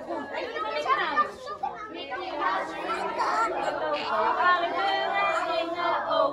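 A crowd of children's voices chattering over one another, with steadier, drawn-out voices from about halfway.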